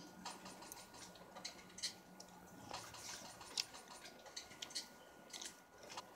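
Faint, irregular wet clicks and smacks of a mouth chewing bubble gum.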